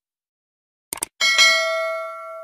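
A short click about a second in, then a bright bell chime that rings on with several clear tones and slowly fades: the subscribe-button and notification-bell sound effect.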